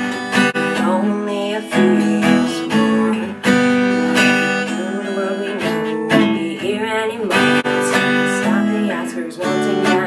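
A young woman singing to her own strummed acoustic guitar. The song is a slow folk-style ballad, and she sings lines such as "In only a few years more, the world we know, the world we knew, won't be here anymore."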